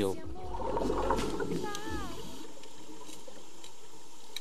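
Muffled underwater noise during a scuba dive: a low rush of water for the first couple of seconds, then a steadier hiss, with a brief wavering tone near the middle.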